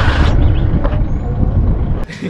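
Engine and road noise of a moving minibus heard from on board: a steady low rumble.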